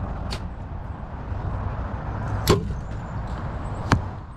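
Compound bow being shot: sharp snaps of the string releasing and arrows striking the target. There is a faint one near the start, the loudest about two and a half seconds in, and another just before the end, over steady low background noise.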